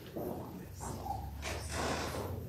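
Quiet congregation sounds: low murmured voices and irregular shuffling and breathing as people move to and from the altar rail.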